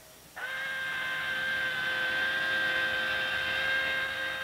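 A steady high whine with several overtones, starting about a third of a second in and holding with a slight waver.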